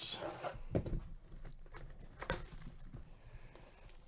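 Shrink wrap being cut and peeled off a cardboard trading-card box: soft plastic handling noise with two sharp clicks, one under a second in and one just past two seconds.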